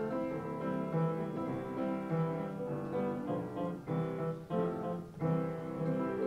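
Piano playing a slow hymn tune in chords, the notes and chords changing about every half second to a second.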